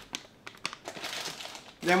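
Plastic sweetener pouch crinkling as it is passed from hand to hand and set down, a run of small irregular crackles.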